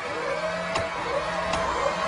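A mechanical whirring sound effect that swoops up and down in pitch over a low hum, with a sharp click about every three-quarters of a second, played as part of a performance's backing track.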